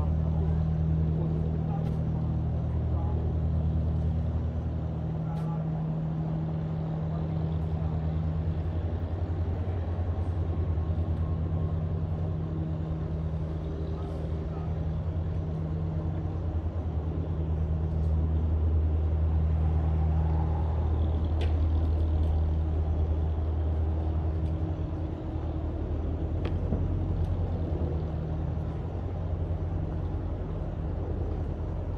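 A steady low mechanical drone, the sound of a motor running, holds throughout at one deep pitch, with a few faint clicks over it.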